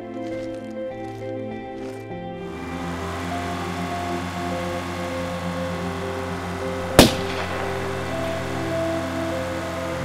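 Background music of held tones, with a single sharp gunshot about seven seconds in.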